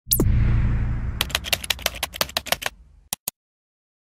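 Animated sound effects: a falling swoosh with a low rumble that fades, then a quick run of keyboard typing clicks as a search term is typed. Two mouse clicks follow a little after three seconds in.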